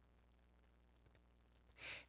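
Near silence: quiet room tone, with a short, soft intake of breath near the end.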